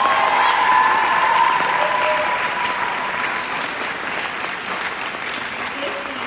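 An audience applauding in a hall, loudest at the start and easing slightly. One long high-pitched note rises above the clapping for the first three seconds.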